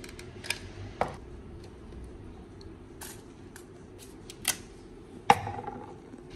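Scattered light clicks and taps as a hot glue gun and a paper pilgrim credential are handled on a wooden counter, the sharpest click about five seconds in, over a faint steady hum.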